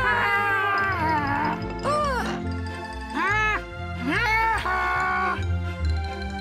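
Cheerful children's cartoon music over a steady bass, with three short animated-character calls that rise and then fall in pitch, about two, three and four seconds in.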